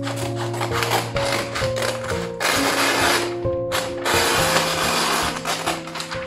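Stiff kraft paper being cut with scissors and rustled as the sheet is pulled off the roll and laid flat, in loud stretches of crackling noise, over background music with held notes.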